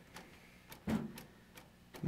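Mostly quiet room with a few faint clicks and one short, soft knock about a second in.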